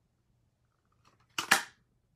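Handheld ice-cream-cone-shaped craft punch cutting through stamped cardstock: a few faint clicks, then a sharp double snap as the punch closes about a second and a half in.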